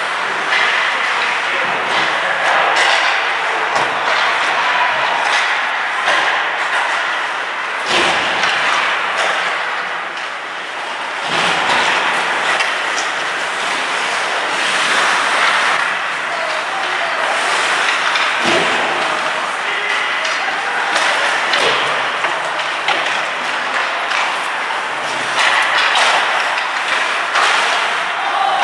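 Ice hockey being played in an indoor rink: a steady scrape of skates on the ice, with frequent sharp clacks and thuds of sticks and puck hitting each other and the boards, and scattered shouts from players.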